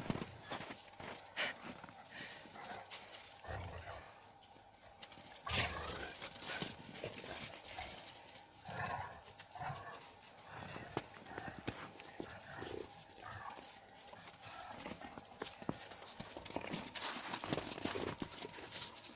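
Puppies and an adult dog romping on snow: irregular scuffling and crunching of paws and footsteps, with a few short squeaky vocal sounds around the middle.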